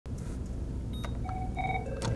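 Electronic ringer of an office desk phone sounding short beeping tones at a few different pitches, starting about a second in, over a low steady hum.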